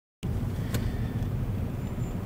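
Steady low rumble of a car driving, engine and road noise heard from inside the cabin, with one brief click about three quarters of a second in.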